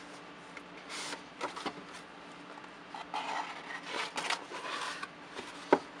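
Small cardboard box being handled and opened: card rubbing and scraping in short, irregular bursts, with a sharp click shortly before the end.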